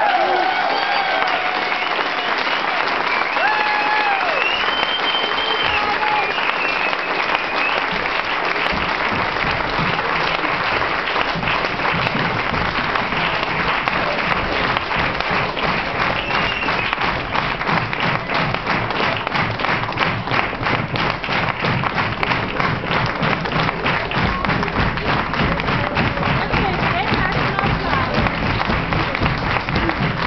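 Club audience applauding at the end of a song, with shouted cheers in the first few seconds; from about ten seconds in the clapping turns into an even, rhythmic beat, typical of a crowd calling for an encore.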